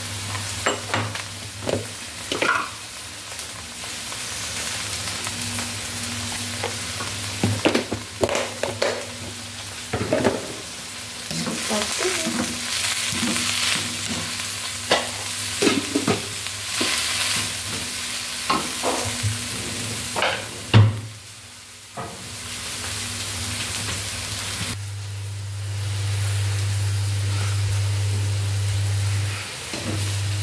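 Bean sprouts stir-frying in a pan: a continuous sizzle, broken by frequent scrapes and knocks of a spatula against the pan. A sharp knock comes about 21 seconds in. After that the sizzle is quieter and a low steady hum stands out.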